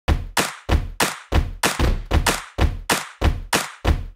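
Percussive intro beat: a steady series of sharp, deep-bottomed thumping hits, about three a second.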